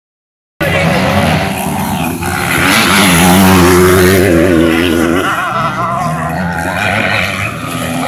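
Motocross motorcycle engines revving hard as riders race past on the dirt track, the pitch climbing and dropping with the throttle. The sound starts abruptly about half a second in and is loudest a few seconds later.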